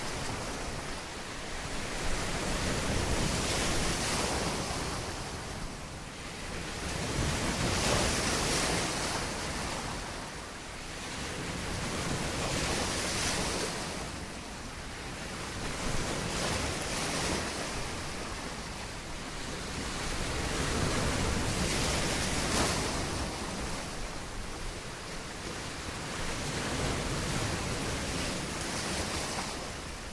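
Sea waves washing onto a shore, a steady wash of surf that swells and fades every four or five seconds.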